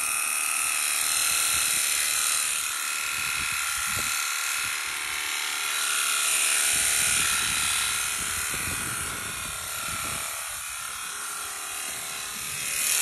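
Electric sheep-shearing handpiece running with a steady motor whine, its comb and cutter clipping through a young sheep's fleece.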